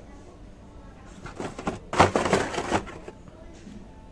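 Toy-car blister packs of plastic and card rustling and clacking as they are handled and flipped on a store peg. A burst of crinkly handling noise builds up about a second in, peaks near the middle and dies away before the end.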